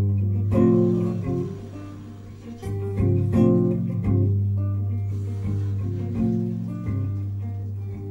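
Live band playing an instrumental passage between sung lines: guitar chords struck every second or so over a steady, held low bass note.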